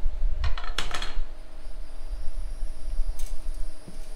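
A steel link bar being handled and set on a steel workbench: a cluster of sharp metal clacks and knocks about half a second to a second in, and another knock or two near the end, over a low steady rumble.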